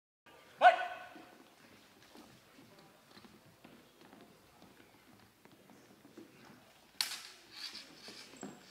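A short, loud shouted call about half a second in, then faint footsteps on a wooden sports-hall floor as two fencers close. About seven seconds in comes a sudden sharp clash of steel longsword blades, ringing and followed by further quick hits.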